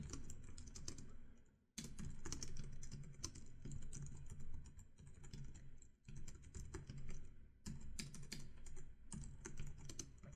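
Computer keyboard typing: fairly quiet runs of quick key clicks, broken by a few short pauses.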